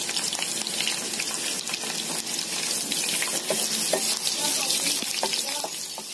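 Chopped garlic sizzling in hot oil in a frying pan: a steady hiss with scattered small crackles.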